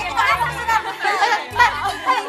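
Several excited teenage girls' voices shrieking and chattering over one another, with background music underneath.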